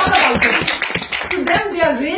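Audience applause mixed with voices, dying away about a second and a half in as a woman starts speaking.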